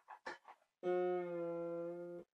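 A bass wire string of an early Irish harp (clàrsach) plucked about a second in and left ringing as one long sustained note; it is the F string being tested against the F an octave above while it is tuned.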